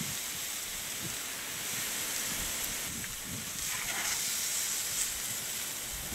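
Hanger steaks sizzling on the grate of a charcoal kettle grill: a steady hiss.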